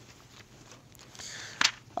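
Thin Bible pages being turned by hand: faint paper rustling with small clicks, then a sharp page flick near the end.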